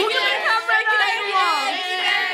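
Several people talking over one another: group chatter.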